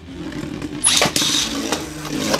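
Beyblade Burst spinning tops in a plastic stadium: a steady whirring hum from a spinning top. About a second in comes a brief, loud whir and clatter as a second top lands and starts spinning, followed by light knocks.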